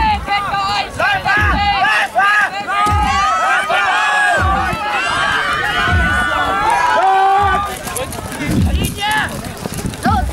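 Young players and spectators shouting over one another, with a low drum beat about every one and a half seconds: the steady 'stones' count that times a Jugger game.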